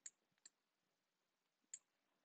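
Near silence: quiet room tone with three faint short clicks, one at the start, one about half a second in and one near the end.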